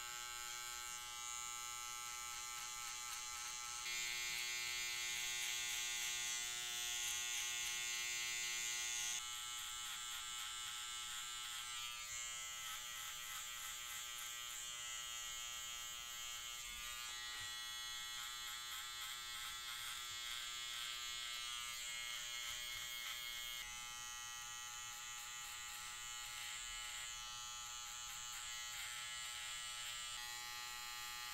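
Cordless hair trimmer buzzing steadily as its blade cuts hair at the neckline and around the ear. It is louder for a few seconds, about four to nine seconds in, and its tone shifts slightly as the blade moves over the head.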